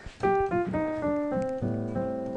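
Piano playing a short descending run of single notes, then an A minor seventh chord with A in the bass about one and a half seconds in, left to ring.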